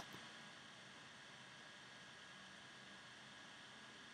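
Near silence: faint steady hiss of room tone, with a single short click right at the start.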